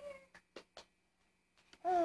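A baby makes short whiny vocalizations that rise and fall in pitch, one at the start and a louder one near the end, with a few soft mouth clicks between them as he chews on his hand.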